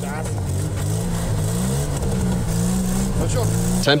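Classic Lada's four-cylinder engine pulling away on snow, its pitch climbing and dropping back several times as it is revved.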